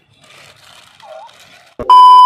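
Faint, quiet sounds of children eating and giggling, then near the end a sudden burst of static-like noise and a loud, steady high beep: a TV test-card tone used as a glitch transition effect.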